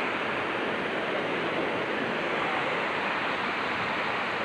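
Steady rushing of a fast river running over rocks.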